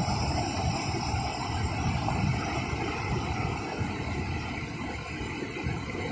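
Steady rush of water pouring over a dam spillway and churning into the river below.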